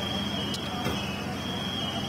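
Steady drone of idling emergency-vehicle engines, with a thin high tone that drops out and returns, a single sharp click about half a second in, and voices in the background.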